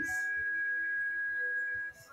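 Background music: a sustained keyboard pad chord with one clear high note standing out, held steady and cutting off just before the end.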